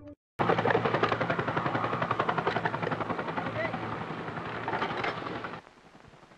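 War sound effects from archival footage: a loud, fast, even thudding at about ten beats a second. It starts just after the song cuts off and drops away near the end.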